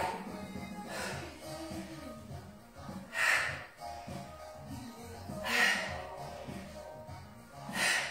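Quiet background music, with three sharp breaths out about two and a half seconds apart, one on each dumbbell squat-to-shoulder-press rep.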